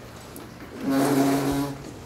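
A chair scraping across the floor as someone gets up, one steady grating scrape of about a second near the middle.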